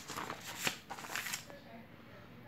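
A page of a paper textbook being turned by hand: a rustle lasting about a second and a half, with a sharper crackle about halfway through as the page flips over.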